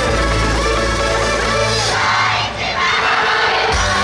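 Loud yosakoi dance music with a heavy bass beat; about two seconds in the bass drops out and a mass of voices shouts together for over a second, then the beat comes back in near the end.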